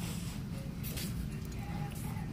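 Shop ambience: a steady low rumble with faint voices in the background, and a sharp click a little under a second in.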